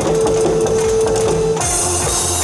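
Janggu and drum kit struck live in quick strokes over a loud backing music track with a held tone. About one and a half seconds in, the music changes to a brighter, fuller section.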